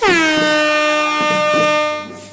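A loud horn blast that starts suddenly, drops sharply in pitch at once, then holds one steady note for about two seconds before stopping, over a light percussion beat.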